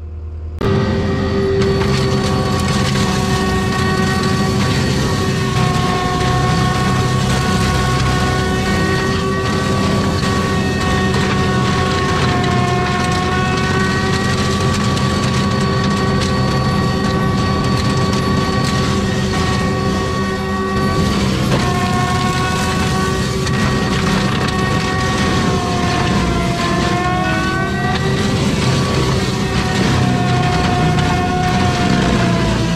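ASV RT-120F compact track loader running a Prinoth M450s forestry mulcher, heard from the operator's seat: steady engine and hydraulic whine over the roar of the mulcher drum, starting abruptly about half a second in. The whine's pitch sags and recovers a few times, most clearly near the end, as the drum takes load in the brush.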